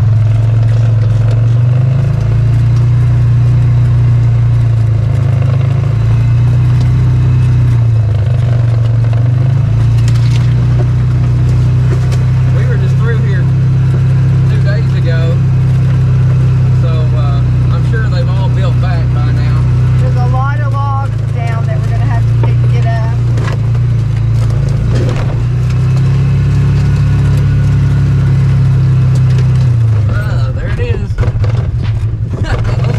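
Engine of a Polaris 500 Crew side-by-side running as it drives along a wooded trail, a steady low drone that steps up and down in pitch a few times with the throttle.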